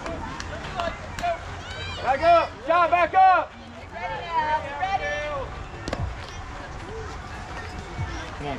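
High-pitched children's voices shouting and calling out across a youth baseball field, loudest a couple of seconds in, with a single sharp knock about six seconds in.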